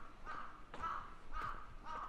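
A bird calling over and over: four short calls about half a second apart.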